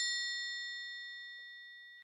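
A single bright bell-like chime ringing out and fading steadily after being struck, several clear pitches sounding together; it cuts off suddenly near the end.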